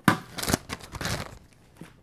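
A sharp knock, then a clear plastic zip-lock bag crinkling in a few short bursts as it is handled on a table.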